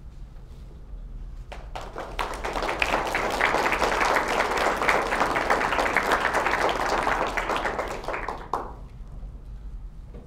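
Audience applauding: a few scattered claps, then a full round of applause that swells within a couple of seconds and dies away about eight and a half seconds in.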